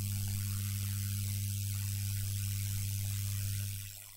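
Steady electrical hum with a low buzz and an even hiss, fading out near the end.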